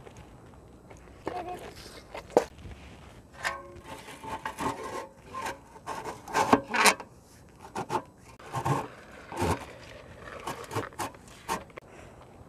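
Split firewood knocking and scraping against a cast-iron wood stove as it is handled and loaded, in an irregular run of sharp knocks and rubs.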